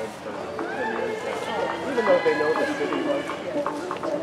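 People talking indistinctly in the background, a steady murmur of voices with no clear words.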